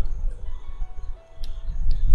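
Soft background music of a few held, stepping notes over a steady low hum, with two faint clicks from computer keyboard typing about one and a half seconds in.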